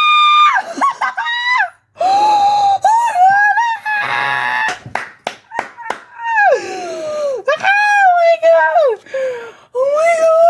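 A young woman squealing and shrieking with excitement: long, very high-pitched wordless cries that glide up and down. About five to six seconds in there are a few sharp claps.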